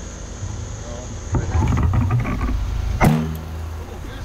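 Steady low engine hum, with one sharp snap about three seconds in as a bowfishing bow is shot and the arrow strikes the water.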